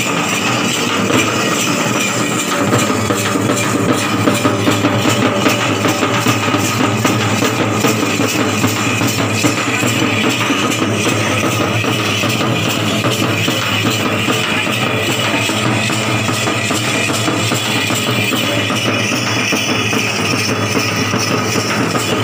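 Loud, continuous music with fast drumming that keeps a steady, rapid beat.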